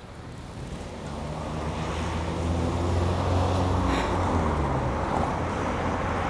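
Road traffic: a motor vehicle's engine hum and tyre noise growing louder over the first few seconds as it approaches, then holding steady.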